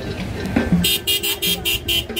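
A vehicle horn sounding a quick run of short toots, about five a second, starting just under a second in, over crowd noise.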